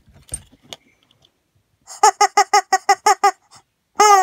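Rubber chicken squeezed in quick succession: eight short, high squeaks about six a second, starting about two seconds in, after some light handling noise.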